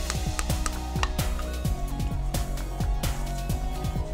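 Background music with a steady beat of bass notes that each drop in pitch.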